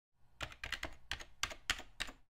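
A quick, uneven run of sharp clicks, about ten in two seconds, that stops abruptly.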